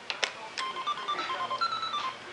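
Toy cash register playing a short electronic jingle of beeps at several pitches, the sound it makes when a toy credit card is swiped, after a single click.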